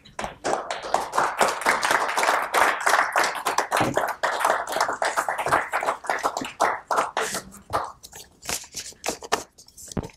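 Audience applause: dense clapping that thins out to a few scattered claps over the last couple of seconds.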